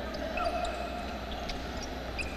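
Basketball game sounds on a hardwood court in a large gym: a ball bouncing, with a few short squeaks and faint ticks over a steady background murmur.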